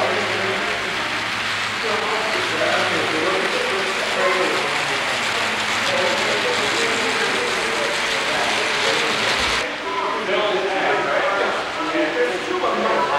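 HO-scale model trains running on the layout, with a steady mechanical clatter of wheels over the track and voices chattering in the room behind. The clatter cuts off abruptly a little before the end, leaving the voices.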